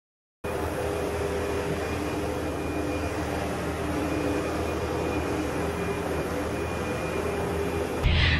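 Upright vacuum cleaner running, a steady motor whir with a constant hum. It cuts in abruptly about half a second in.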